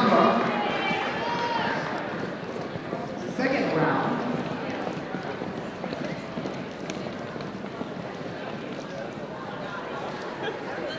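Murmur of voices in a large hall, with scattered footsteps of dancers' heeled shoes on a wooden dance floor.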